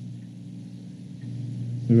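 A steady low hum of room tone, with a man's voice starting a word at the very end.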